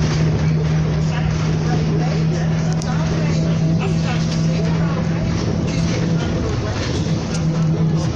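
Bus engine running with a steady low drone, heard from inside the moving bus, with voices talking over it.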